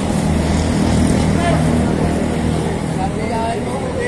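Street traffic: a motor vehicle's engine running close by, a low steady rumble that swells over the first second or so and then eases off. Faint voices can be heard in the background.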